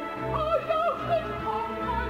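Operatic soprano singing with vibrato over a sustained orchestral accompaniment, the voice leaping up to a high note and falling back within the phrase.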